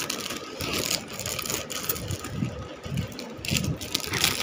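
Plastic packaging rustling and crinkling as it is handled and opened, in irregular bursts with small handling bumps.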